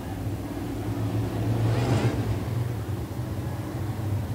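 A pack of dirt super late model race cars with V8 racing engines accelerating together on a restart. The engine noise grows louder over the first couple of seconds, then runs steadily.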